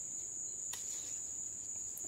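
Steady high-pitched trill of crickets, with a sharp click of hand pruning snips cutting a jalapeño stem a little under a second in and a fainter click near the end.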